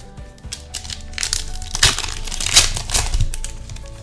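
Foil Pokémon booster pack wrapper crinkling in quick crackles as it is handled and opened, thickest in the middle, over faint background music.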